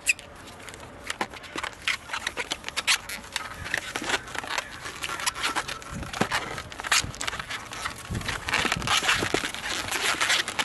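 Long latex modeling balloon being tied and twisted by hand: irregular rubbing, crackling and short squeaks of the rubber, with a few higher squeaks near the end.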